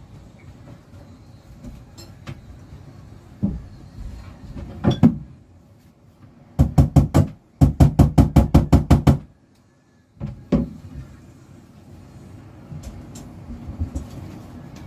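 Quick, even knocks of work at a boat cabin's cabinet door while a small latch is fitted: a few single knocks, then two rapid runs of about four and about ten strikes in the middle, and one more knock after a short pause, over a steady low rumble.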